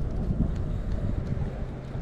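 Wind blowing on the microphone: a low, uneven rushing noise.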